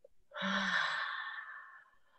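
A woman's audible sigh: one long breath out, voiced briefly at the start and fading away over about a second and a half, the breath released after a breath-retention exercise.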